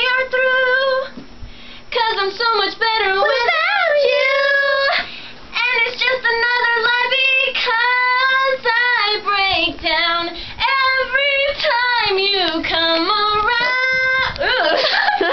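A girl singing a pop song unaccompanied: long held notes and quick runs with a wavy vibrato, in phrases broken by short breath pauses.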